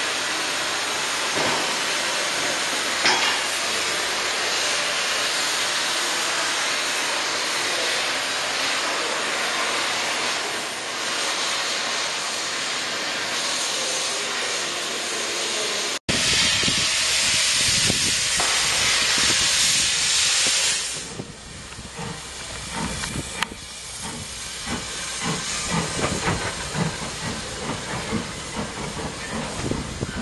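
Oxy-acetylene cutting torch hissing steadily as it cuts steel. After a break about halfway through, a louder, higher hiss follows for about five seconds, then stops. A quieter rumble with scattered knocks takes its place.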